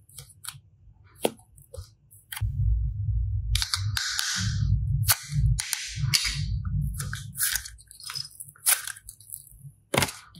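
Hands squeezing and stretching soft slime and clay, giving a run of sharp clicking pops. A dull handling rumble with a sticky crackle fills the middle few seconds. A few louder pops stand out, one just after a second in and one near the end.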